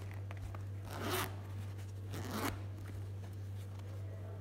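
Zipper on a handmade fabric makeup bag being pulled open in two short strokes, about one and two seconds in.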